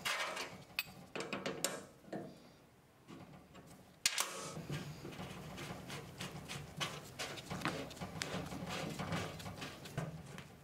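Metal ultrasonic transducers being handled on a steel plate: an irregular run of small clicks and knocks as they are set down and twisted onto threaded studs, with a sharper knock about four seconds in.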